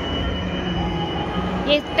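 Background din of an indoor mall arcade: a dense low rumble of crowd and machines with a thin, steady high-pitched whine over it.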